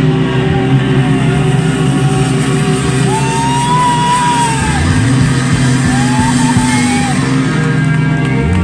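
Live rock band holding sustained chords on electric guitar and keyboard, with a high note that bends up and down over them. The song is near its close.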